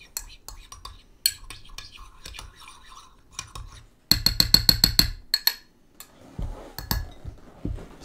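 Metal spoon clinking and tapping against a glass jar while yeast is stirred into hydrogen peroxide with soap. Scattered clinks build to a quick run of about ten a second for about a second in the middle, followed by a few duller knocks.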